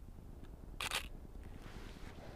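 Camera shutter firing once for a 1/25-second exposure: a single short click about a second in.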